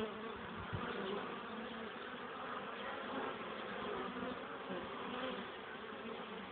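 Many honeybees buzzing steadily in a dense, continuous hum at a colony that is expected to swarm, with one soft low bump just under a second in.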